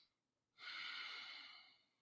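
A man breathing slowly through his nose as a meditation breath demonstration: one long breath, starting about half a second in and fading away over about a second.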